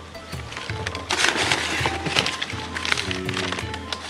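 Crumpled newspaper packing rustling and crackling as it is handled and unfolded, loudest from about a second in until about three seconds in, over background music.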